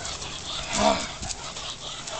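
A Rottweiler biting and tugging on a jute bite sleeve: scuffling and rustling of the sleeve and paws, with one short pitched vocal cry a little under a second in.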